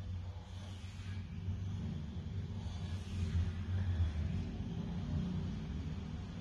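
Steady low machine rumble from building work next door, swelling a little about three to four seconds in.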